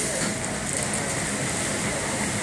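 Steady factory machinery noise: an even, rushing hum with a low rumble underneath.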